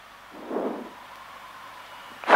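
Steady faint hiss of a cockpit headset and intercom audio feed, with a thin steady tone under it and a brief soft sound about half a second in.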